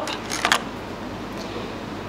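Brief clatter about half a second in as a toothed metal hammer is picked up off a plastic cutting board, over a steady room hum.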